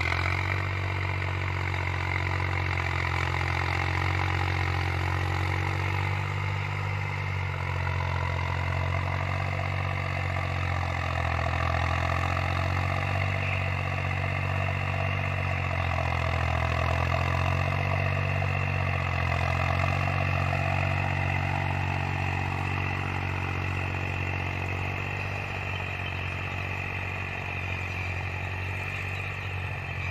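Tractor engine running steadily under load while pulling a Sonalika 10-foot rotavator, whose spinning blades churn the soil. The engine pitch rises and falls slowly.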